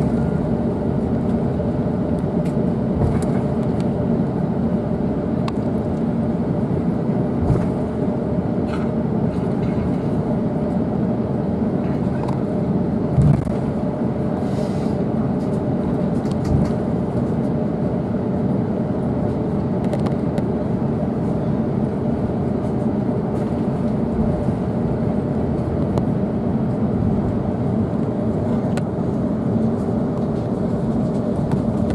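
Cabin noise inside an Airbus A350-900 taxiing: a steady rumble of the Rolls-Royce Trent XWB engines at taxi power with a constant hum. A few brief thumps come through, one about seven seconds in and two more in the middle.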